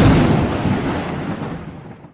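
A single loud, deep boom that dies away steadily over about two seconds before cutting off.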